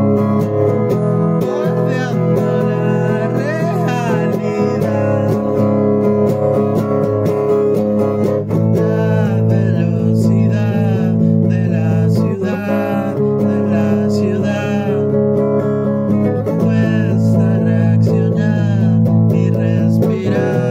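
Amateur cover song: a man singing over guitar. The voice comes in briefly about two seconds in, then sings on from about eight seconds in.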